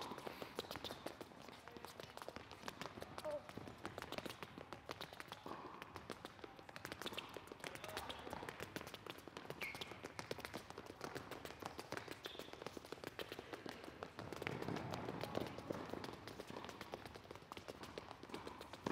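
Rapid, faint footsteps of players stepping quickly through an agility ladder and sprinting off across a hard court: a dense patter of light taps.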